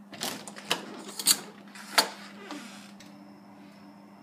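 A brass doorknob being turned and rattled: a string of metallic clicks and rattles from the knob and latch, the sharpest about a second in and again about two seconds in, over a steady low hum.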